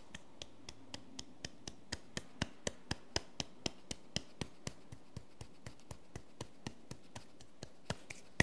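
Sharp rhythmic clicking or tapping, about four clicks a second, growing louder over the first few seconds and then fading away.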